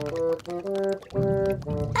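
Background music: a melody of short held notes changing every fraction of a second, over a low pulsing accompaniment.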